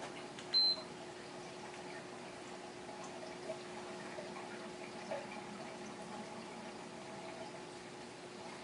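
A single short, high beep from a Gymboss interval timer about half a second in, then the steady hum and trickle of a large home aquarium's pump and filter.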